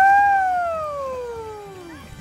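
A woman's long drawn-out cheer, "uhhh!", pitch rising for a moment and then sliding slowly down as it fades away over about two seconds.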